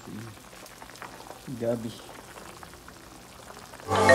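Pork pieces boiling in broth in an uncovered wok, a faint steady bubbling; the meat is being boiled to tenderise it before the vegetables go in for sinigang.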